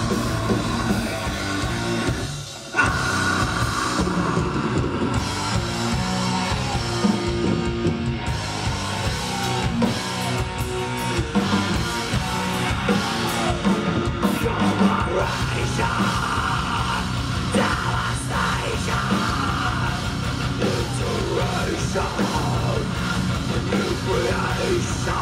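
A heavy metal band playing live: distorted electric guitars and a drum kit, with a vocalist singing over them. The music briefly drops out for a moment about two and a half seconds in, then comes straight back in.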